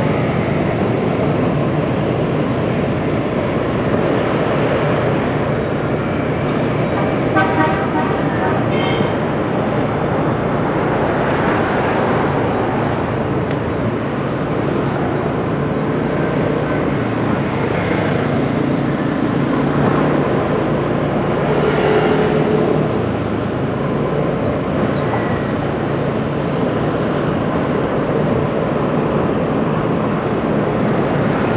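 Steady motorbike and car traffic heard from a moving motorbike in city traffic: engines and road noise, with a few short horn beeps about seven to nine seconds in.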